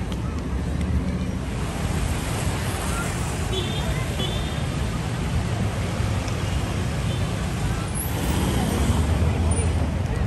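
City street ambience: a steady low rumble of road traffic with voices of passers-by mixed in.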